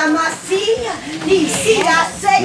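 Several people talking and calling out over one another, some voices high-pitched, in an indoor gathering.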